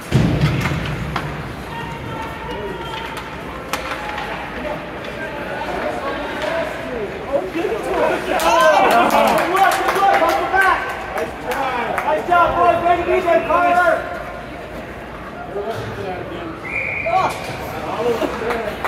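Indoor ice hockey rink during youth play: spectators' voices shouting, loudest in a stretch in the middle, over the sharp clack of sticks and pucks on the ice. A short high whistle blast sounds near the end.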